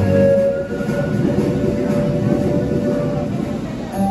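Yamaha Electone Stagea ELS-02C organ playing a steam-train sound effect: a dense, rapid chugging with a steady held tone over it that stops a little before the end.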